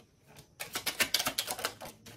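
A quick run of light clicks, several a second, starting about half a second in.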